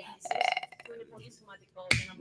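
A short pause in speech: faint, broken vocal sounds sit low in the background, and a sharp mouth click comes near the end as talking resumes.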